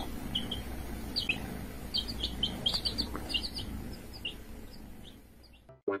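Baby chicks peeping: many short, high cheeps in quick irregular runs over low background noise, thinning out and fading after about four seconds.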